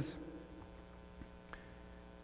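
Faint steady electrical mains hum in the sound system, with two faint ticks a little over a second in.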